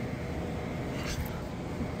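Steady low hum of room tone, with a faint brief hiss about a second in.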